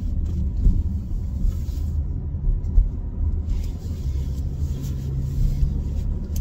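Low, steady rumble of a car's engine and road noise heard from inside the cabin while driving, with a steady low hum coming in about halfway through.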